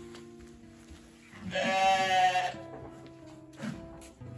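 A sheep bleats once, about a second and a half in, a loud call lasting about a second, over background music.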